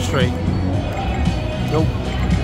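Casino floor sound with background music and people's voices, plus short electronic chirps and tones from a video poker machine as cards are held, drawn and a new hand is dealt.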